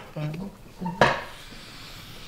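Exaggerated wet kissing smacks with short muffled hums, between two men. A sharp smack about a second in is the loudest sound.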